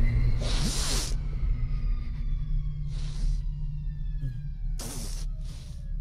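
Sci-fi film sound effects: a steady low machine hum with several short hissing whooshes and thin electronic tones that slide slowly downward.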